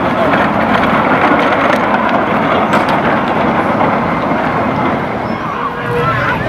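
Loud, steady crowd noise: many voices shouting and talking at once, blending into a dense wash with no single voice standing out.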